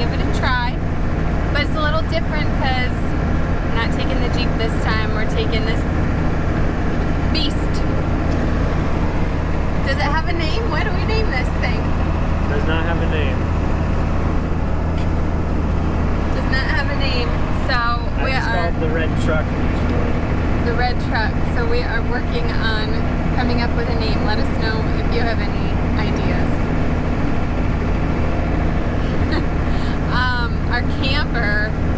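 Cummins diesel engine of a square-body GMC crew-cab pickup running steadily at highway speed, a constant low drone with road noise, heard inside the cab.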